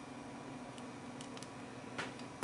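Quiet room hum with a few faint clicks from a Samsung phone's hardware keys being pressed to step through the recovery menu and confirm a zip install.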